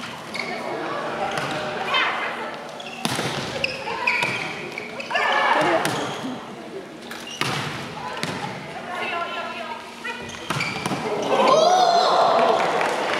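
Volleyball being hit during a rally: several sharp smacks of hand on ball, a few seconds apart, over voices and shouts from the crowd and players.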